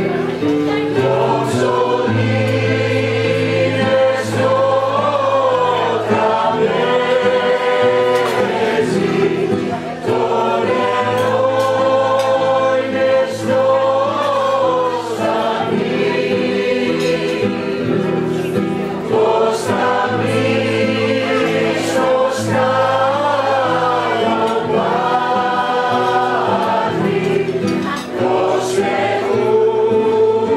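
Mixed choir of women and men singing a song in harmony, accompanied by acoustic guitar, in long sustained phrases.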